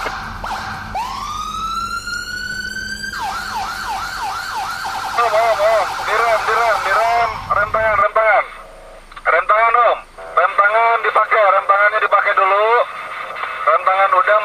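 Electronic vehicle siren: a wail rising in pitch for about two seconds that cuts off, followed by a fast warbling yelp that repeats, broken by short pauses.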